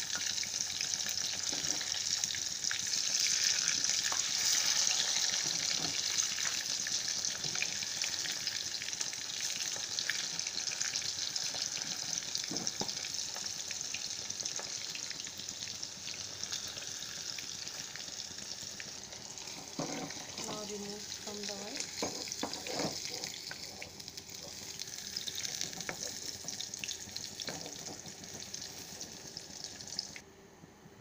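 Fish pieces deep-frying in mustard oil in a wok: a steady sizzle that is loudest in the first few seconds and slowly dies down. A steel ladle clicks now and then against the pan.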